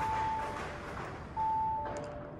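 Audi A5's in-car warning chime sounding on repeat: twice, each time a clear higher tone followed by a fainter lower one, about a second and a half apart.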